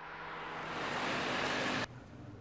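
A rush of noise that swells steadily for about a second and a half, then cuts off abruptly just before the end.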